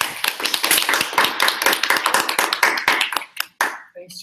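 Small audience applauding, a dense run of hand claps that dies away near the end.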